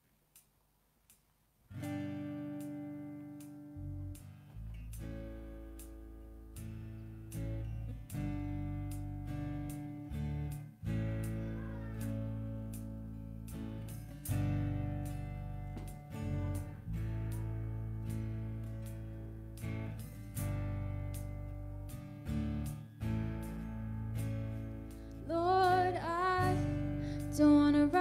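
Live worship band starting a slow song after a second or two of near silence: strummed acoustic guitar chords over electric bass, the chords held and changing every second or two. A woman starts singing near the end.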